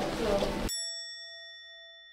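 A single bell-like ding, added as an editing sound effect, rings out about two-thirds of a second in over otherwise dead silence and slowly dies away. Before it there is a brief tail of background voices and room noise.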